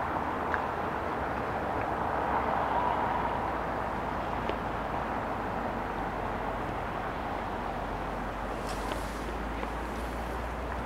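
Steady wash of distant town traffic, the tyre and engine noise of cars, swelling slightly a couple of seconds in, with a few faint clicks.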